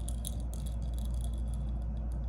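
Steady low hum with faint background hiss and no distinct events: room tone between phrases of speech.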